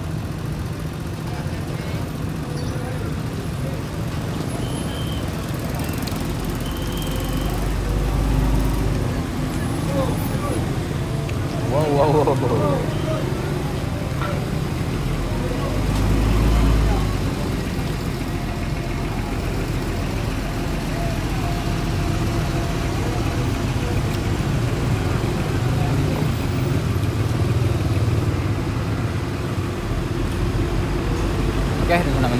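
Large coach bus's diesel engine running as the bus creeps through traffic, with low swells in the rumble as it pulls forward, the second as it passes close by. Motorbikes and street traffic around it, with voices in the background.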